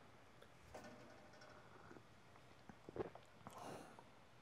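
Near silence, with a few faint clicks about three seconds in and a soft sip of espresso from a small glass near the end.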